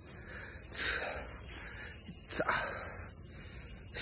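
Steady, high-pitched chorus of crickets.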